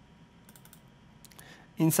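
Several light computer mouse clicks, including a quick double-click a little over a second in. A man's voice starts near the end.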